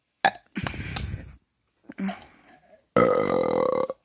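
A person burping: a short burp, a rougher one lasting under a second, then a long drawn-out burp of about a second near the end.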